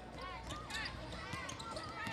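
Basketballs bouncing on a hardwood court, a scatter of irregular knocks, with voices calling in the background of a large arena.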